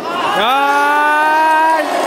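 A single loud, long human shout: its pitch rises sharply at the start, then holds steady for about a second and a half before it stops.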